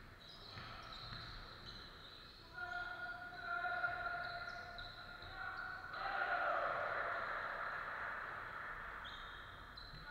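Basketball play in a large, echoing sports hall: the ball bouncing on the hardwood court and sneakers squeaking, with a louder rush of noise about six seconds in that slowly fades.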